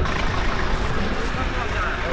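Faint voices talking over a steady low rumble of outdoor background noise.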